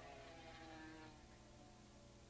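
Near silence: faint distant race-motorcycle engines, a thin drone that falls slightly in pitch and fades out about a second in, over a steady low hum.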